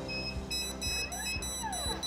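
Electronic alarm beeping as the AirShield door contact triggers the Dahua NVR's buzzer: short beeps at first, then a faster, higher pulsed beeping from about half a second in. Under it runs a faint whine that rises and then falls in pitch as the PTZ dome camera swings to its preset.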